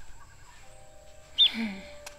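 Soft sustained background music chords, with a short high chirp about a second and a half in, followed at once by a brief low, falling vocal sound from a cartoon bird.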